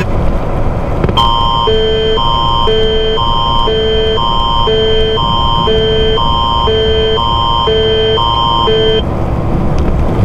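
Canadian Alert Ready attention signal coming over a truck's cab radio. It is a steady high tone with a lower two-pitch pattern alternating about once a second, starting about a second in and lasting about eight seconds, over the cab's engine and road rumble. The signal opens an emergency alert broadcast, here a test of the Alert Ready system.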